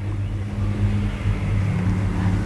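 A steady low mechanical hum, like an engine or motor running, with a faint steady drone above it and light background noise.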